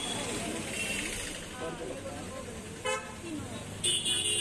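Busy street with background voices and traffic noise, and a short vehicle horn toot about three seconds in.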